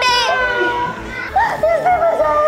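Young people's voices making high-pitched, wordless exclamations that slide up and down in pitch, over light background music.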